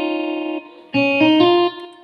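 Electronic keyboard playing single notes: one held note dies away, then about a second in three notes step upward one after another and ring briefly. The notes are picked in a group of three, as part of a pattern of threes and twos with a key skipped between groups.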